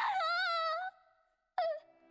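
A young woman's high voice crying out tearfully in Japanese, a wavering, sobbing wail from anime dialogue that breaks off just under a second in. A second short cry comes near the end.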